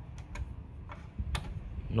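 Light plastic clicks of an SD memory card being pushed and fumbled against the card slot of a Panasonic PM670SD mini stereo, a few scattered ticks with the sharpest a little past the middle. The card is not going in, being held the wrong way round.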